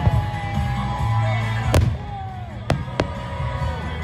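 Aerial firework shells bursting with three sharp bangs, the loudest a little under two seconds in and two more close together near three seconds, over loud music with singing.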